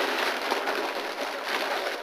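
Crinkling and rustling of gift wrapping paper and a plastic bag being handled, a dense crackle of small clicks.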